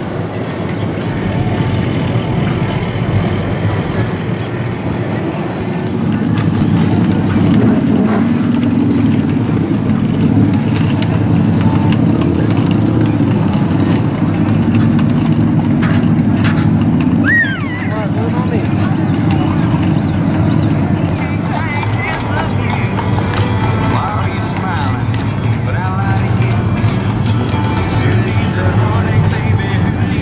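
Busy street sound: horses' hooves clip-clopping on brick pavement as horse-drawn wagons pass, amid people's voices, music and motor vehicles.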